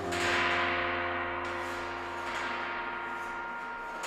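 Background music: a gong-like metallic note struck at the start, ringing on and slowly fading.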